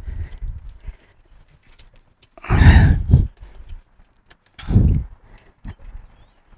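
Two loud, breathy huffs of effort about two seconds apart from a man straining to hold and seat a small part with both hands, with a few faint light metal clicks in between.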